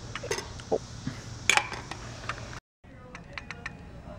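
A metal fork clinking and tapping against a plate a few times while cantaloupe is eaten, with one louder clink about a second and a half in. The sound drops out briefly about two and a half seconds in, and faint clicks follow.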